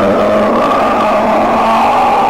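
A man's loud, drawn-out wailing cry, held on one pitch, from a comedy film clip.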